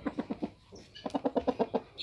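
Rooster clucking in quick runs of short, even clucks, about ten a second, in two bursts with a half-second pause between them.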